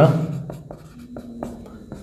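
Marker writing on a whiteboard: about six short taps and strokes as letters are written. A man's word trails off at the very start.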